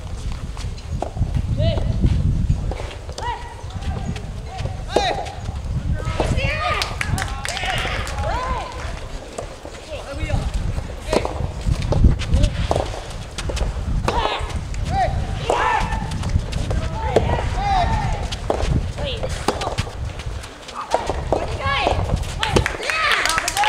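A soft tennis rally: the rubber ball is struck by rackets and bounces off the court in sharp knocks, and players' feet move on the court. Voices and shouts come and go throughout, over a steady low rumble.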